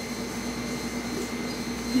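A steady low hum with faint background hiss, holding one pitch without change.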